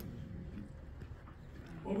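A pause in a man's speech over a microphone and PA in a large banquet hall: faint room noise with a steady low hum. His voice comes back near the end.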